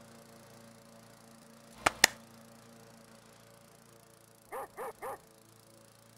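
Two sharp knocks close together about two seconds in. Near the end a dog barks three times in quick succession. Faint music plays underneath.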